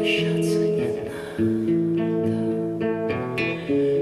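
Acoustic guitar strumming sustained chords, the chord changing several times.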